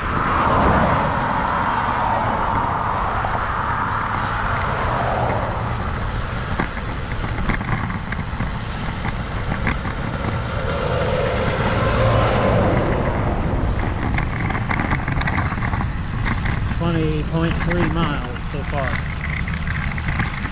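Steady wind and road noise on a moving road bicycle's camera microphone, with passing motor traffic swelling and fading; the louder swell, about eleven to thirteen seconds in, is an oncoming semi truck going by.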